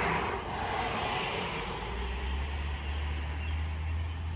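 Road traffic on a wet street: a steady hiss, with a low engine hum that comes in about halfway and holds.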